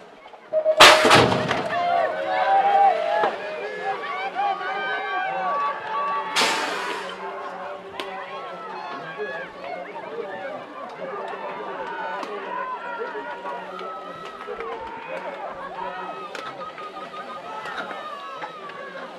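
BMX starting gate dropping with a loud bang about a second in, followed by spectators shouting and cheering as the riders race. A second loud rush of noise comes about six seconds in.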